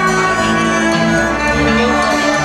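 Live band music in an instrumental passage, two violins bowing long held notes over the band; the notes change about a second and a half in.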